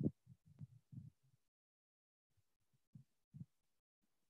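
Faint, soft low thuds of a stylus tapping and writing on a tablet screen: a quick cluster in the first second and a half, then two more about three seconds in.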